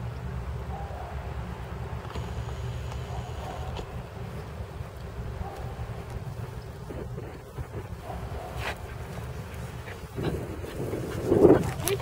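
Wind rumbling steadily on the microphone outdoors. A brief, louder voice comes in near the end.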